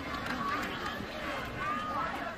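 Stadium crowd noise during a running play: many voices shouting over one another above a steady background roar.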